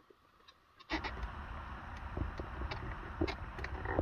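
Hands pushing and rubbing against the plastic glove box liner: a steady scraping rustle with small plastic clicks, starting about a second in.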